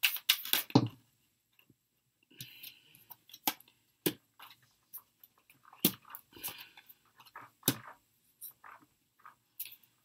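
Tarot cards being handled on a table: short rustles of shuffling and several sharp clicks as cards are snapped or set down, four of them louder than the rest.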